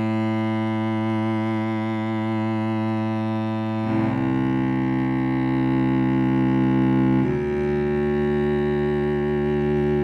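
Sampled solo cello from the Cello Untamed library playing sustained long bowed notes in the normale articulation, with vibrato wavering in the held tones. The note changes about four seconds in and again about seven seconds in.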